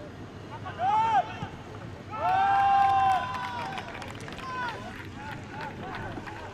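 Players shouting on a football pitch: a short call about a second in, then a louder long held shout about two seconds in, over steady ground noise.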